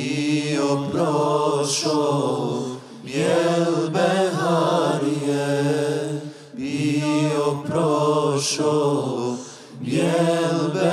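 A man chanting a Bosnian devotional hymn solo and unaccompanied, in long, slow, ornamented phrases, pausing briefly for breath about three, six and a half and nine and a half seconds in.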